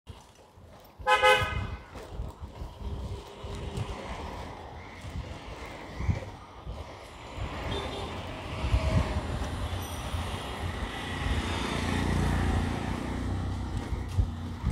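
A vehicle horn toots once, briefly, about a second in. Street traffic and road noise follow, growing louder towards the end.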